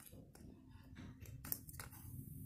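Faint clicks of a plastic Mutations Raphael transforming toy figure being handled and its parts fitted together, a few scattered clicks with the sharpest about one and a half seconds in.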